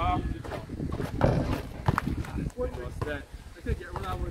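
Outdoor pickup basketball on a concrete court: men's voices calling out over players' footsteps, with a couple of sharp knocks about one and two seconds in.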